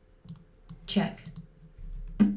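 Computer mouse clicks and the chess program's short move sounds as pieces are played: a few light clicks and one louder knock with a brief low ring about a second in.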